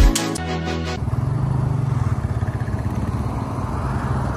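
Intro music ends about a second in, followed by a vehicle engine running steadily at a low, even pitch.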